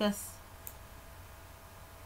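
Quiet room tone with one faint, short click about two-thirds of a second in, after a single spoken word at the very start.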